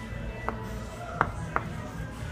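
Chalk tapping and scratching on a blackboard as letters are written, three short sharp taps, over background music.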